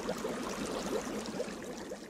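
Bubbling water sound effect, a dense run of small bubbles that slowly fades away.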